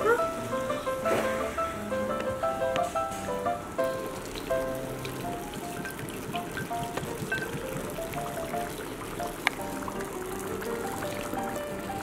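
Dry ice bubbling and fizzing in a bowl of water, a steady crackling patter like rain, under background music with a simple stepped melody.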